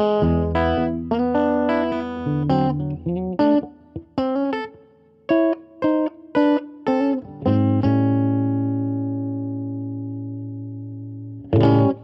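Electric guitar played clean through a TC Electronic Hall of Fame reverb pedal into a Fender Bassman amp. It starts with picked notes and short chord stabs, then a chord is left ringing and slowly fading for about four seconds, and one last short chord comes near the end.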